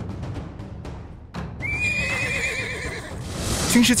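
A horse whinnying: one quavering call of about a second and a half, starting about one and a half seconds in, over background music. Before it comes a quick run of ticks.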